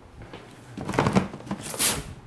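Cardboard shoeboxes being handled and slid out of a cardboard shipping carton: rustling, scraping cardboard, with the loudest scrape near the end.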